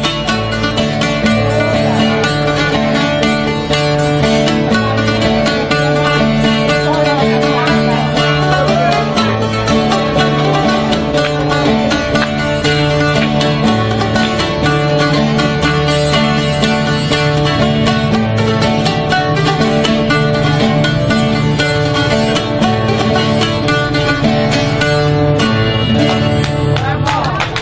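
Live acoustic folk music: a bowl-backed plucked lute of the bouzouki kind and an acoustic guitar playing steadily over a repeating bass figure.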